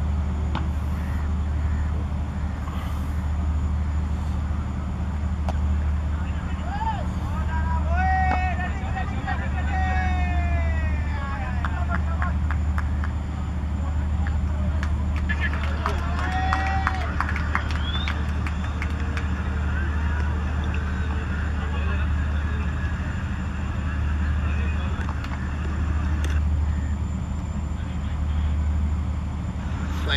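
Steady low outdoor rumble with distant shouts and calls from players on a cricket field, coming in a cluster about a quarter of the way in and again around the middle, mixed with a few sharp claps or knocks.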